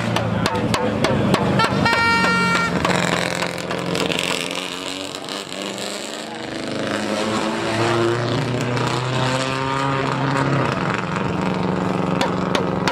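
Rally car engine revving hard, its note rising and falling through gear changes as it passes, with sharp crackles over it.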